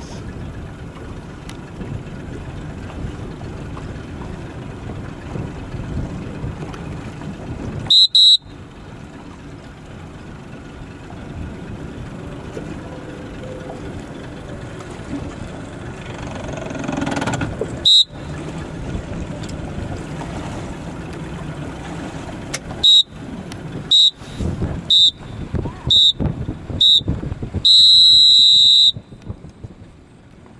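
Electronic race-start horn counting down the last 30 seconds of a sailing start: single high beeps about eight and eighteen seconds in, then five short beeps a second apart and a longer final beep that signals the start. A steady rush of wind and water fills the gaps.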